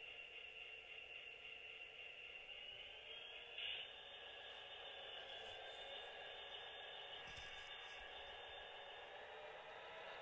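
Faint, steady motor whine and hum of an HO-scale Proto 2000 GP20 model locomotive running along the track, its pitch edging up slightly a few seconds in as the power is turned up, with a brief click shortly after.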